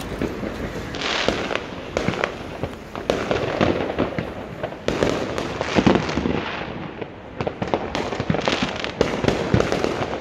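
Fireworks going off: a continuous stream of overlapping bangs and sharp pops with no pause, loudest around six seconds in.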